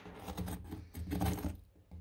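Knife tip scraping across the crisp crust of a freshly baked cornmeal-and-wheat bread, a dry, crunchy rasping in strokes, loudest about a second in.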